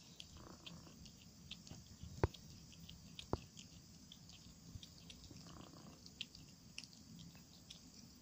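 Domestic cat chewing a freshly caught mouse: a soft, irregular run of small crunching clicks, with two louder sharp cracks about two and three seconds in.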